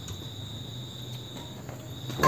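Crickets trilling in a steady, high-pitched tone, with a low steady hum underneath.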